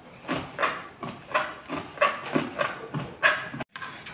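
Hands kneading a soft ball of maida dough, squeezing and slapping it in a quick, uneven run of wet squelches, about three a second.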